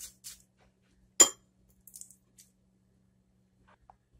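A couple of short scrapes of a kitchen knife on charred onion skin, then one loud, sharp metallic clink about a second in as the knife is set down on the counter, followed by faint rustling.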